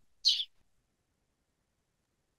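Near silence: a brief soft breathy sound from the presenter about a quarter second in, then dead silence, as on a noise-gated video call.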